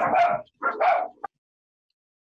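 Dog barking twice in quick succession; the sound cuts off abruptly to dead silence a little over a second in.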